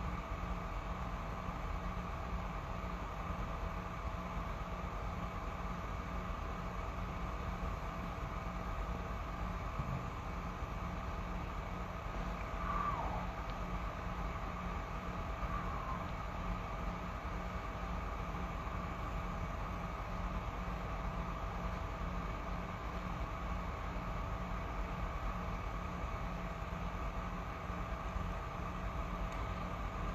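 Steady background hum and hiss of a quiet room, with faint steady tones. A faint falling squeak comes about thirteen seconds in.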